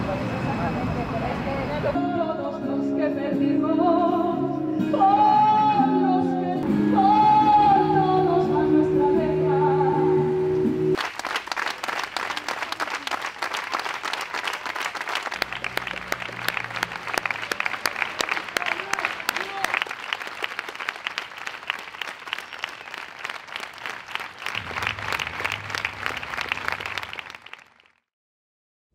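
Singing over sustained low notes for about nine seconds, then a crowd applauding steadily for the rest, fading away near the end.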